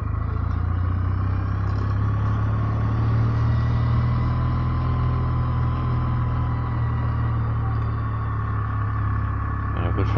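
Kawasaki W650's air-cooled parallel-twin engine running steadily at low town speed, a deep even rumble with little change in pitch.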